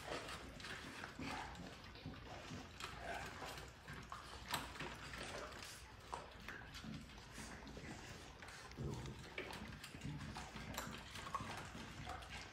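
Puppies moving about and scuffling on a concrete floor: faint scattered clicks and shuffles, with a few short puppy noises.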